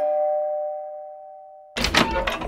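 Two-tone doorbell chime: its lower second note sounds and fades away over about a second and a half. Near the end, a sudden loud noise comes as the door swings open.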